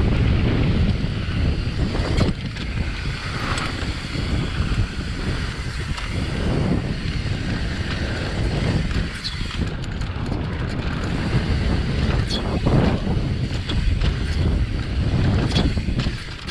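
Wind buffeting a GoPro's microphone as a downhill mountain bike runs fast down a dirt trail, with tyre rumble and frequent short knocks and rattles from the bike over bumps.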